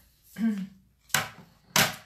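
Two sharp knocks about half a second apart, the second louder: hard plastic cutting plates of a manual die-cutting machine being set down and knocked into place on its platform.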